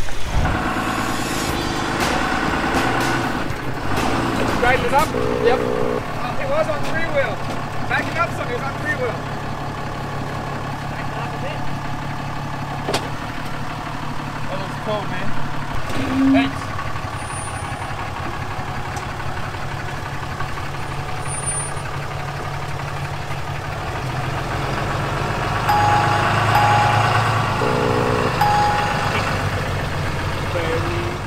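A pickup truck's engine running steadily at low revs as it crawls over rock, with indistinct voices at times.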